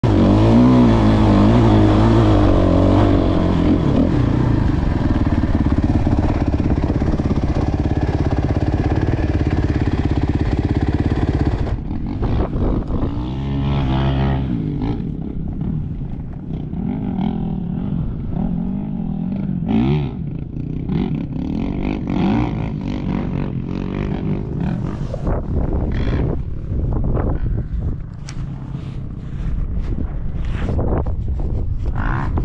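Dirt bike engine running hard with rising and falling revs while riding. About twelve seconds in it drops suddenly to a quieter low running, with one short rev. Near the end come knocks and rubbing from the camera being handled.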